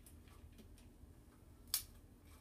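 Quiet kitchen room tone with one short, sharp click near the end, from a spoon and meatballs being handled over a foil-lined sheet pan and paper towels.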